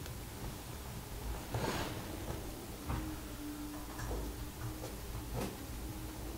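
Faint, scattered small ticks and clicks of a screwdriver tip turning the adjusting screw of a broken-open trimpot, which drives its inner gear.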